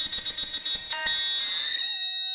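Improvised electronic music: steady, high, alarm-like electronic tones held through, with faint ticking underneath and a single click about a second in.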